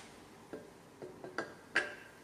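Camshaft clinking against the Subaru cylinder head's bearing journals as it is handled and seated: about five sharp metal clinks, some with a brief ring, the loudest near the end.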